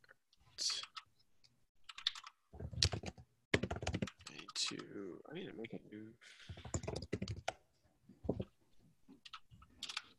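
Typing on a computer keyboard: irregular runs of key clicks, with a short laugh a little past the middle.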